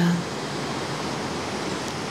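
Steady rushing of a river, an even wash of water noise.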